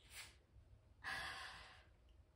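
A woman's breathing: a short quick breath near the start, then a longer breathy exhale about a second in that fades away.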